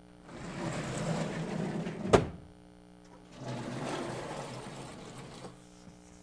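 Sliding chalkboard panels being pushed along their frame: a rumbling slide that ends in a sharp bang as a panel hits its stop about two seconds in, then a second, quieter slide of about two seconds. A steady mains hum lies underneath.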